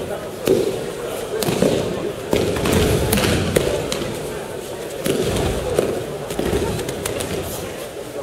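Sharp slaps and thuds of aikido breakfalls and bodies landing on tatami mats as partners are thrown, repeated irregularly, over a steady murmur of many voices in a large hall.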